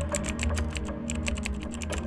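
A quick, irregular run of keyboard typing clicks, a sound effect for text being typed out on screen, over background music with a deep steady bass.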